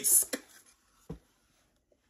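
The end of a man's spoken words, then a single short thump about a second in as the lid of a cardboard shoebox is popped open.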